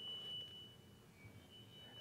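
A faint, high-pitched steady whistle tone in a very quiet room. It holds for about a second, breaks off, and returns briefly near the end.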